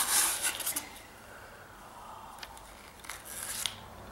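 Cardboard gift box being opened by hand: a short burst of scraping and rubbing in the first second as the flap and contents are handled, then a few fainter rustles near the end.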